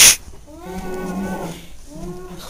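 A boy's breathy sigh right at the start, then a drawn-out low moan lasting about a second, and the start of another moan near the end.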